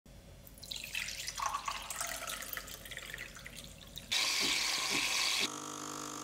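Water poured from a glass carafe into a glass tumbler, splashing and gurgling for about three seconds. About four seconds in, a louder hiss cuts in for a second and a half. Then an espresso machine's pump hums steadily as coffee runs into a glass.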